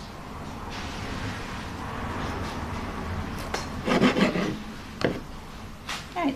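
Serrated bread knife sawing through the crusted edge of a layered sandwich: a steady rasp for a couple of seconds, then a few shorter strokes and a couple of light clicks.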